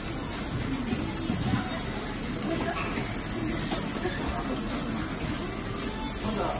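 Slices of beef tongue sizzling steadily on a gas yakiniku grill, with faint voices behind.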